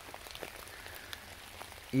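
Rain falling in woodland: an even hiss with scattered single drop ticks.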